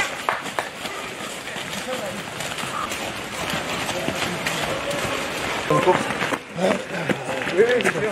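Several runners' footsteps on a path of fallen leaves, with indistinct voices in the second half.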